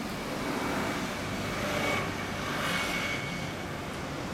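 Kawasaki Ninja 250's parallel-twin engine idling through an aftermarket BEAMS BMS-R exhaust, a steady low hum. A broader rushing sound swells up about a second and a half in and fades before the end.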